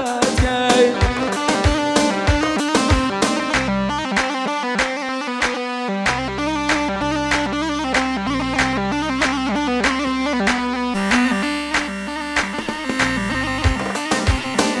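Kurdish line-dance music played on amplified instruments: a quick, steady drum beat under an ornamented plucked-string or keyboard melody. A deep bass line joins about six seconds in.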